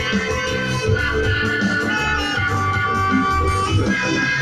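Live reggae band playing, with guitar to the fore over a steady bass line and drums.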